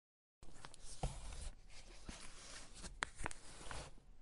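Quiet rustling and scraping with a few light knocks, starting about half a second in: books being handled and slid about on a bookshelf.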